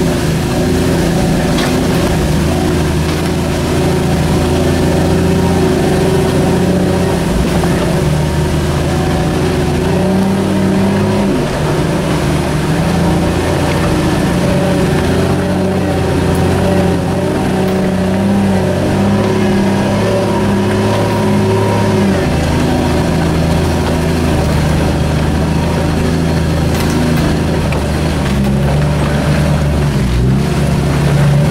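Jeep engine running steadily at low speed while the vehicle crawls along an off-road trail, heard from on board; the engine note steps up about 11 seconds in and drops back about 22 seconds in.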